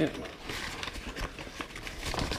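Clear plastic bag around a bag of flour crinkling and rustling irregularly as it is handled while flour is scooped out.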